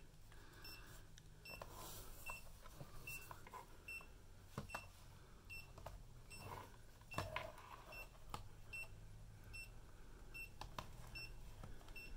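Faint, short, high-pitched beeps repeating about every three-quarters of a second from the National Radicame C-R3 radio-camera's flash-ready beeper, sounding along with the green strobe-ready light. There are a few light clicks between the beeps.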